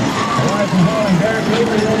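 A race announcer calling the finish of a chuckwagon heat, his voice running on without a break over a steady background noise.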